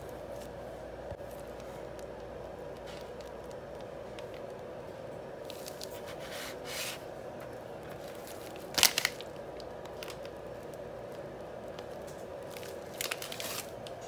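Steady background hum, with a few brief handling knocks and plastic rustles as frosted cupcakes and a piping bag are handled on a cutting mat; the loudest knock comes about nine seconds in.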